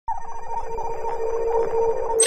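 An electronic sci-fi spaceship-cockpit sound effect: a steady fluttering hum made of a few held tones. It starts suddenly at the very beginning and runs on evenly.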